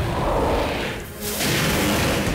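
Cartoon sound effects of a black mold monster lunging: a loud rush of whooshing noise that eases about a second in and then surges back louder, with background score music.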